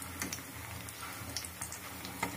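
Hot oil in a kadhai sizzling softly around gram-flour-coated tomatoes, with scattered faint crackles and ticks.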